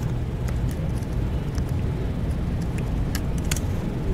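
Laptop keyboard typing: a scatter of light, irregular key clicks, with two sharper ones near the end, over a steady low room rumble.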